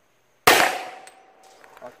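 A single shot from a Taurus PT-100 pistol in .40 S&W, firing a full-metal-jacket flat-point 180-grain round, about half a second in. A steady metallic ring lingers for about a second after it as the bullet strikes the steel plate, and a few light clicks follow near the end.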